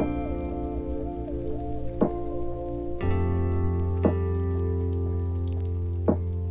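Instrumental music: sustained chords with a slow melody line above them, changing chord about halfway through, and a single soft percussive hit about every two seconds.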